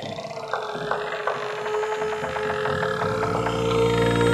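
Experimental electronic music: a steady held tone with scattered clicks and glitchy sweeping textures over it, and a low rumbling drone that swells up in the last second or so.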